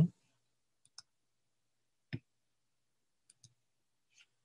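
A few isolated clicks of a computer mouse with near silence between: faint ones about a second in and again near the end, and a louder one about two seconds in.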